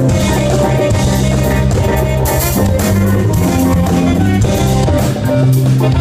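Live band playing, with drum kit, electric guitar, electric bass and keyboards, and a saxophone soloing over them.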